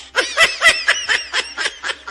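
High-pitched giggling laughter in a quick run of short bursts, about five a second. It is loudest in the first second and eases off a little towards the end.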